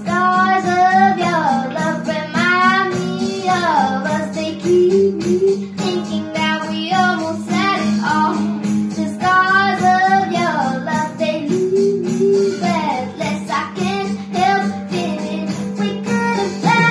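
A girl singing a pop song solo, in sung phrases with wavering held notes, over a steady accompaniment that includes guitar.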